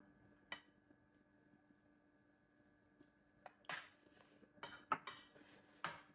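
Metal spoon and chopsticks clinking lightly against ceramic bowls at a meal: one click about half a second in, then several short clinks in the second half, over a quiet room with a faint steady hum.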